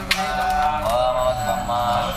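Priests chanting Sanskrit mantras, a steady sung recitation in male voices. There is one sharp click about a tenth of a second in.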